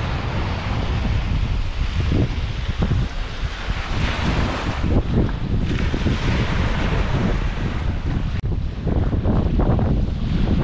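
Wind buffeting the microphone over small waves breaking and washing up a sandy beach, a steady rushing noise with heavy low rumble.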